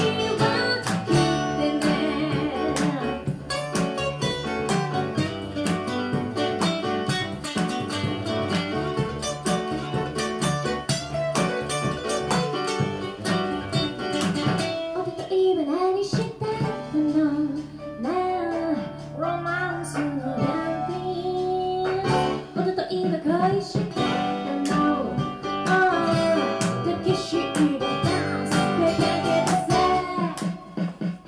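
A live song: an acoustic guitar strummed steadily under a woman singing into a microphone.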